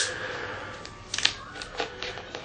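Plastic soda bottle being opened: the cap twisting off with a soft hiss at first, then a few sharp clicks of plastic a little over a second in.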